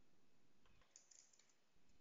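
Faint typing on a computer keyboard: a short run of key clicks about a second in, otherwise near silence.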